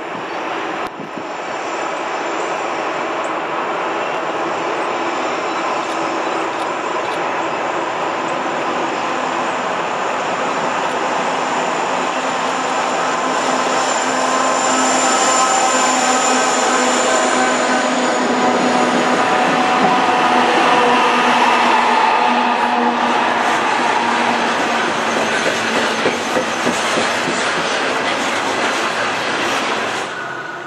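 Norfolk Southern diesel freight train coming downgrade and passing close. The locomotives' engines and a steady high whine build in loudness as they approach, then the cars roll by on steel wheels with some high wheel squeal, loudest past the middle and easing slightly near the end.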